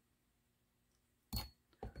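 A plastic glue bottle set down into a glass jar with one short clink about a second and a half in, after near silence. A voice starts just at the end.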